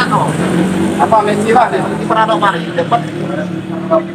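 Indistinct voices talking, over a steady low hum.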